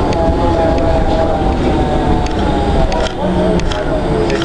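Cabin noise of a Flyer trolleybus under way: a steady low rumble with occasional short clicks and rattles.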